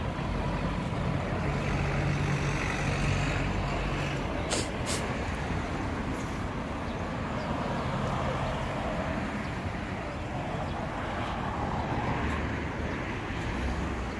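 Road traffic: a steady rumble of passing vehicles, with a heavier engine's hum swelling twice. Two sharp clicks come about four and a half seconds in.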